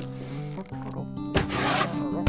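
Background music with steady notes. About one and a half seconds in, a click is followed by a short rasping rub lasting about half a second.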